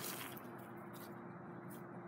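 Faint rustling and a few brief scuffs in dry lawn grass, the clearest at the start and near the end, over a faint steady hum.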